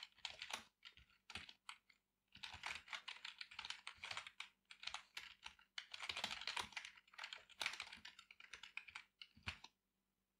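Typing on a computer keyboard: a few scattered keystrokes at first, then two long runs of quick key clicks, stopping shortly before the end.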